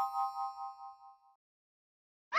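End of a short electronic intro jingle: a bright chime chord ringing out with a pulsing wobble, fading away about a second in.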